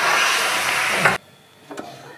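A loud, steady hiss that cuts off suddenly a little over a second in, leaving near quiet.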